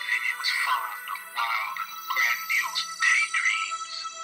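Synthesizer music: a held chord with short, gliding electronic phrases over it.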